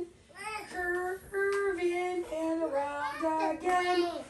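Children singing a simple tune, one held note after another.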